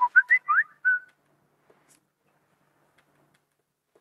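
Smartphone message alert: a quick run of about five short, whistle-like chirps, several rising in pitch, lasting about a second.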